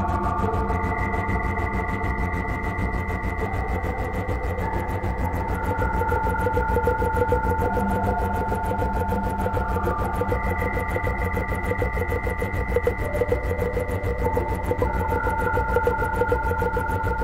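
Ambient electronic music played on synthesizers: slowly shifting held chords over a low drone, with a fast, even pulse running throughout.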